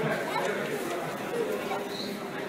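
Indistinct voices chattering in a large indoor public space.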